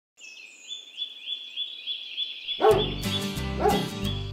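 A songbird repeating a short rising note about three or four times a second, with a fainter higher call at the start. Acoustic guitar music comes in about halfway through and is the loudest sound from then on.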